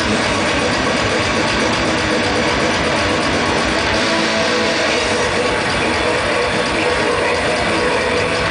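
Death metal band playing live: heavily distorted electric guitars and bass over dense drumming, loud and continuous, heard through a camcorder microphone in the crowd.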